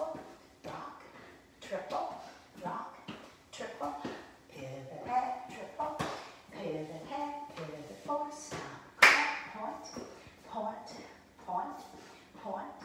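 A woman calling out line-dance steps, with cowboy boots tapping on a tile floor and one loud, sharp clap about nine seconds in.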